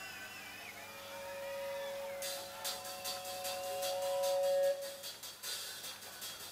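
Pause between songs at an outdoor rock concert: a steady held tone from the stage amplification swells in loudness and stops just before five seconds in. From about two seconds in, a run of sharp clicks or taps joins it, with scattered whistles from the crowd at the start.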